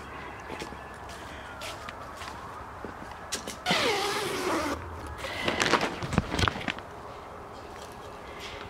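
Plastic sheeting of a small pop-up greenhouse rustling and crinkling as a person brushes in through its door, loudest for about a second midway, followed by a few scattered knocks and light taps.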